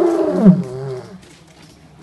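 A man's voice giving one long, loud shouted call through a traffic cone held as a megaphone, dropping in pitch as it ends about a second in.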